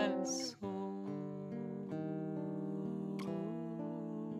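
Acoustic guitar playing the closing chords of a folk song. A fresh chord comes in about half a second in, and the notes are left to ring and slowly fade.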